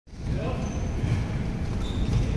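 Dull, irregular low thuds over a steady low rumble, with faint voices behind.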